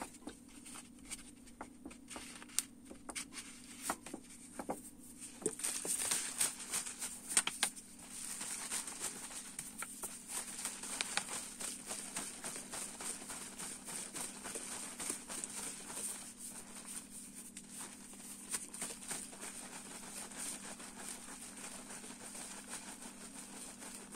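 Plastic water bottle of petrol and two-stroke oil shaken by hand to mix the fuel: liquid sloshing with the plastic clicking and crackling, scattered at first and continuous from about eight seconds in.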